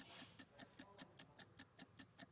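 Countdown-timer ticking sound effect: faint, fast, even ticks, about five a second, marking a sales countdown running down.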